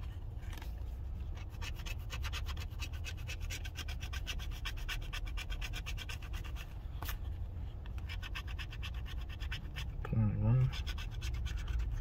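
A coin scraping the silver coating off a scratch-off lottery ticket in quick, continuous back-and-forth strokes, pausing briefly partway through.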